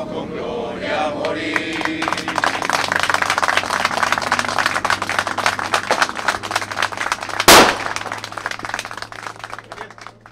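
A group of people singing together, ending about two seconds in, then a crowd clapping and applauding, fading near the end. A single loud, sharp bang cuts through the applause about seven and a half seconds in.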